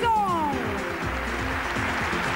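Background music playing, with a long high-pitched glide falling steadily in pitch during the first second.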